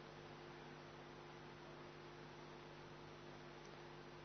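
Near silence: a faint, steady electrical hum over room hiss.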